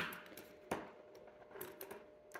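A few light clicks and taps of small hard objects being handled on a desk: one sharper click under a second in and smaller ticks near the end, over a faint steady hum.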